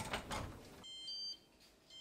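An oven door shutting with a thump. Then come two short electronic beeps about a second apart, each a steady high tone lasting about half a second.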